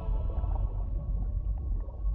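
Soundtrack music at a low ebb: a deep, steady rumbling drone with faint held notes above it.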